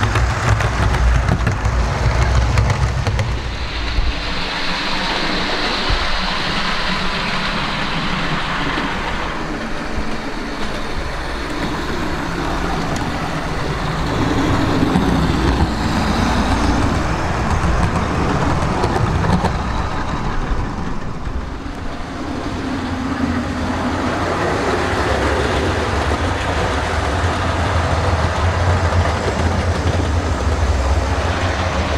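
Old Hornby OO-gauge HST model train running round a layout: the power car's motor whirring and the wheels rumbling over the track in a steady run, with a heavier low rumble near the start and the end as it passes closer.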